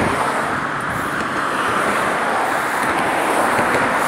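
Steady road traffic noise from cars driving across the bridge: an even, continuous hiss with no single vehicle standing out.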